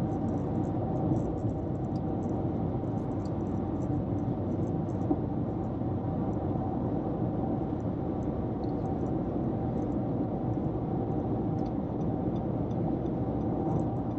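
Car driving at highway speed, heard from inside the cabin: steady road and engine noise.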